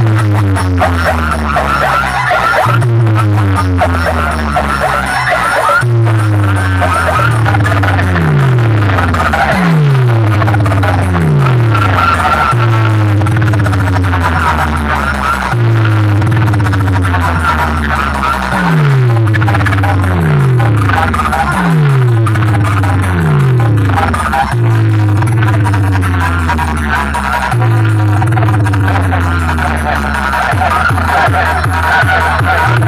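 Very loud electronic dance music blasting from a large DJ loudspeaker stack, dominated by heavy bass with deep bass notes sliding downward in runs every few seconds.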